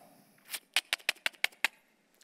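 Pages of a Bible being flipped quickly by hand: a fast run of about nine short paper flicks over a little more than a second, starting about half a second in.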